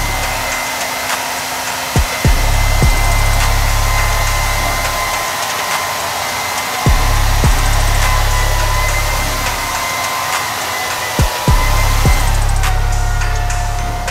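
Hand-held hair dryer blowing steadily, its motor whining at one pitch, until the whine drops lower about twelve seconds in as the dryer is switched down in speed. A few low thumps and stretches of low rumble come and go over the air noise.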